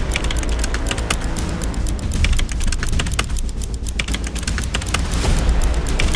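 Rapid keyboard-typing clicks, a steady run of many clicks a second, laid over intro music with a heavy, steady bass.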